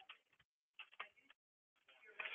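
Near silence with a few faint computer-keyboard keystroke clicks, grouped about a second in.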